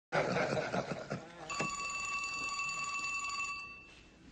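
Men laughing and talking, then a telephone rings once, a steady bell-like ring of about two seconds starting about a second and a half in and fading near the end.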